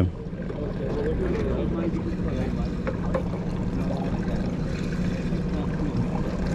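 A fishing boat's engine running steadily at idle, a low even hum, with faint voices of people on deck behind it.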